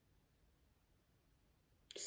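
Near silence: faint room tone, with a brief sharp click just before the end.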